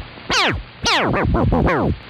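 Whistle-like calls standing in for a squirrel's warning whistle. There is one steeply falling call about a third of a second in, then a quick run of four or five more falling calls.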